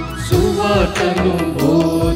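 A devotional hymn sung by a voice over instrumental accompaniment, with a steady beat of drum strikes.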